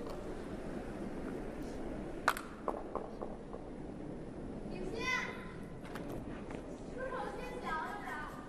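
Hall ambience of an indoor curling arena: a steady hiss, with a sharp click about two seconds in and a few lighter ones just after. Short calls from a voice come about five seconds in and again near the end.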